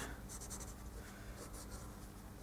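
Faint, scratchy drawing strokes of a hand sketching, several short strokes a second, over a low steady hum.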